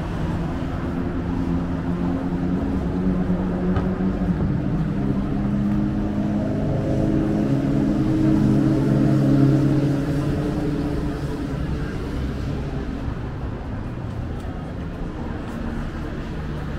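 Road traffic at a city intersection. A low vehicle engine hum builds to its loudest a little past halfway, then fades.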